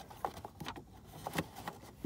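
A few faint clicks and light rubbing of a hand against plastic dashboard trim.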